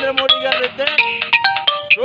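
A melody of quick, short electronic notes at changing pitches, with a ringtone-like sound.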